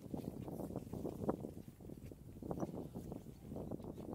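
Irregular scuffs and low knocks of shoes stepping down steep bare granite and hands shifting on the cable handholds, a few a second.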